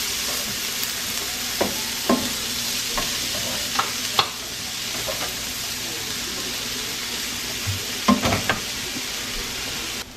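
Chanterelle mushrooms and sliced ramps sizzling steadily in olive oil in a non-stick skillet. A slotted spatula scrapes and taps the pan a few times as they are stirred.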